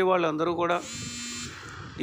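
A man's voice for a moment, then a short steady electric-sounding buzz lasting under a second, which stops about halfway through.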